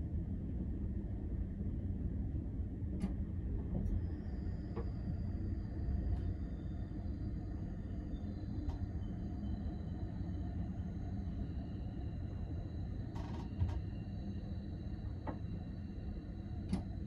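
Low, steady rumble of a Nightjet sleeper train rolling slowly into a station, heard from inside the compartment. A few light clicks sound, and from about four seconds in faint high-pitched whines join.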